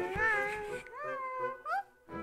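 A cartoon character's wordless, high, cat-like vocalisations over background music: a few calls that waver in pitch, the last a short rising one near the end.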